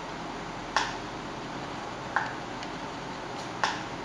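Computer mouse clicking: three sharp clicks about a second and a half apart, with a couple of fainter ticks between them, over a steady hiss.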